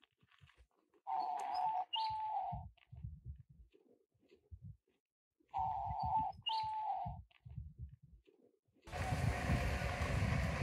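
A dove cooing in two phrases a few seconds apart, each of two held notes, the second note of each dipping slightly. Near the end a steady rushing noise takes over.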